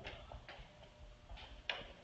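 A few faint ticks and taps in a quiet room, the clearest tap coming near the end.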